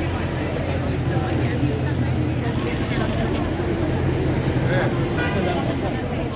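Busy city street: road traffic with a steady low engine hum that eases near the end, under the chatter of passers-by.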